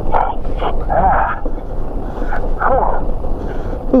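Steady riding noise as an electric bike travels over a packed snow trail: wind on the microphone and tyre rumble, with a few short, muffled voice sounds.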